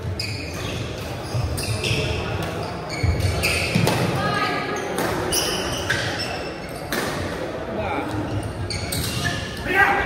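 Badminton doubles rally in a large indoor hall: several sharp hits of rackets on the shuttlecock and players' footfalls on the court, over people's voices echoing in the hall.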